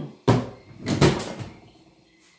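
Two sharp knocks on a desk, about three quarters of a second apart, the second slightly louder and followed by a short ringing that dies away.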